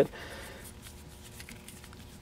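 Quiet room tone with a faint steady hum and no distinct event.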